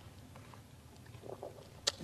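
Quiet room tone in a pause between spoken sentences: a faint steady hum with a few soft small sounds, and one short sharp click just before speech resumes.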